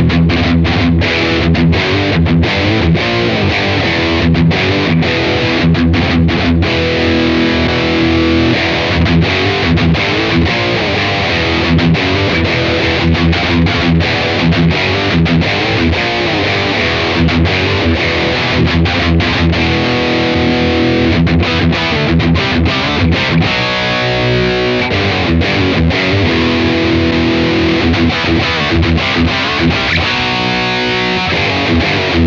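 Distorted electric guitar through a Blackstar AMPED 2 on its classic high-gain voice with the gain fully up, boosted by the pedal's overdrive section (drive at zero, level full), which tightens the sound and adds presence: a metal rhythm riff with frequent short, choppy stops.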